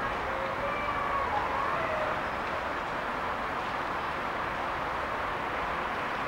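Steady sound of a distant freight train hauled by an ÖBB electric locomotive approaching along the line. Faint wavering tones come through in the first two seconds.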